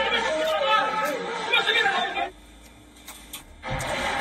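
Voices of several people talking over each other, stopping about two seconds in; a short lull follows, then a low thump near the end.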